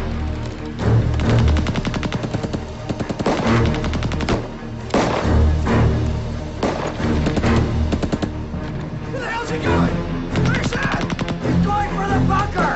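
Bursts of rapid machine-gun fire in a staged battle soundtrack, laid over a music score, with short breaks between the bursts.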